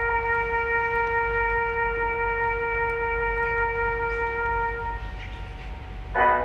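One long, steady horn note, like a bugle call, held for about five seconds and then fading out.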